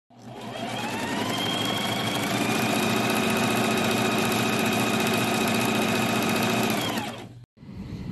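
Electric sewing machine stitching: the motor speeds up over the first couple of seconds, runs steadily, then slows and stops about seven seconds in.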